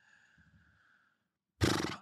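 A pause of near silence, then near the end a short, loud, breathy vocal noise from a man just before he starts speaking.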